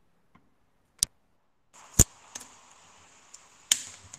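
Sharp clicks and knocks picked up by a video-call microphone: one about a second in, a loud knock at about two seconds and another near the end. Just before the middle a steady hiss comes on, a sign that the microphone has gone live during audio troubleshooting.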